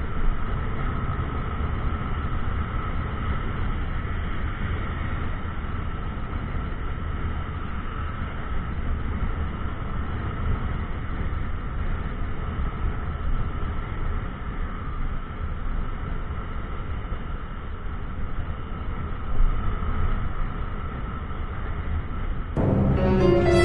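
Steady wind rush and road noise of a motorcycle riding at speed, with the engine's even drone underneath, heard on a helmet-mounted microphone.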